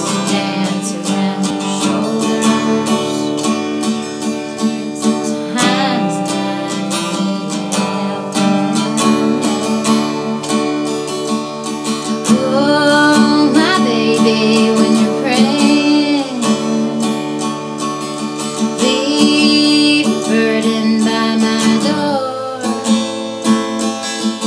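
Acoustic guitar strummed steadily in chords, with a woman singing in places.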